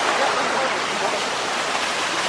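Steady rush of water from a small artificial waterfall pouring over a ledge into a pool.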